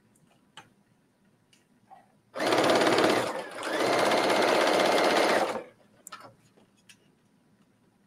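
Sewing machine stitching a seam in one run of about three seconds, starting about two and a half seconds in, slowing briefly partway before running at a steady speed and stopping. A few light clicks of fabric handling come before and after.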